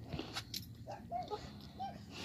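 A dog yelping in about four short, high yips, each rising and falling in pitch, in the second half, with a few sharp clicks before them.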